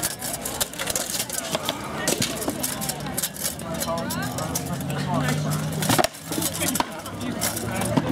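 Sword blows in SCA heavy combat: taped rattan swords striking wooden shields and steel helms. There are several sharp knocks, the loudest about six seconds in, over the chatter of onlookers' voices.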